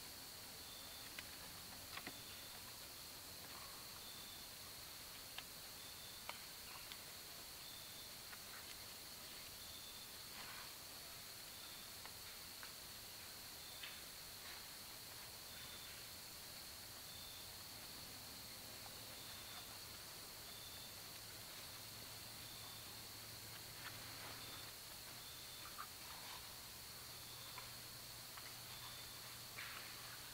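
Faint quiet background with a steady high whine and a short high chirp repeating every second or two. Occasional soft clicks and rustles come from hands pressing wet clay into the gaps between logs.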